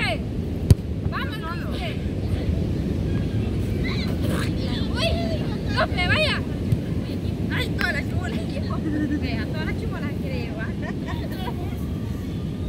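Steady low rumble of wind on the microphone and beach surf, with brief scattered shouts from people close by. A single sharp click comes just under a second in.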